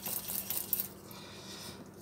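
Wire whisk stirring melted butter in a stainless steel saucepan, clinking lightly against the pan: a few small metallic ticks in the first second, then quieter.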